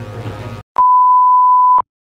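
Television test-pattern tone: a single loud, steady high-pitched beep lasting about a second. It is edited in just after the background music cuts out.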